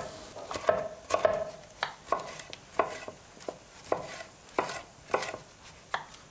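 Chef's knife cutting red bell pepper on a wooden cutting board: sharp, irregular knocks of the blade on the board, about two a second.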